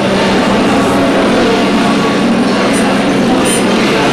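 Dense chatter of a large indoor crowd, many voices overlapping into a steady murmur with no single voice standing out.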